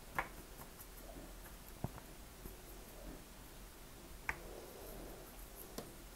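Quiet room tone with four light, scattered clicks from handling a watercolor brush and palette between strokes.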